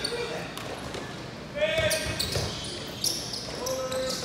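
Basketball bouncing on an indoor court during play, with players' and spectators' voices calling out in a large hall.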